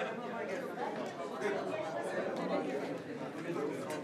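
Several people talking at once in overlapping, indistinct chatter.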